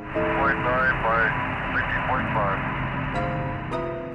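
Air-to-ground radio transmission from the Apollo 8 spacecraft: a hissing, narrow-band static channel with a garbled, unintelligible voice in it. Plucked harp-like music notes sound under it and come through clearly near the end.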